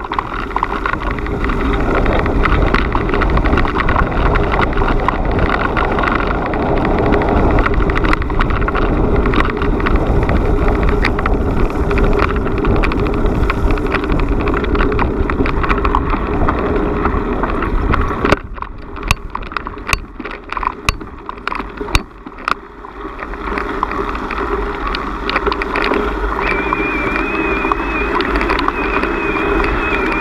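Steady rushing wind noise on the microphone with a low rumble, as when moving outdoors. It drops to a quieter stretch with a few sharp clicks about two-thirds of the way in, then picks up again, with a faint wavering high whistle-like tone near the end.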